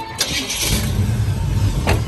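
A 1987 Chevrolet C10's small-block V8, a 350 bored out to about 355, cranked by the starter and catching almost at once, then running steadily. It starts readily. A short sharp click comes near the end.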